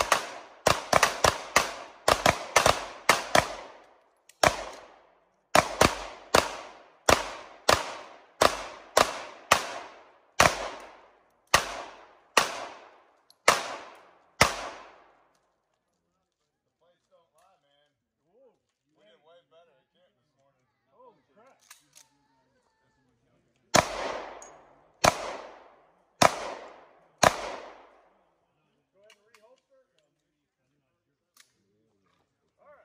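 Semi-automatic pistols fired by three shooters at once, a rapid overlapping string of shots for about fifteen seconds. After a pause, about four more shots come a second apart near the end.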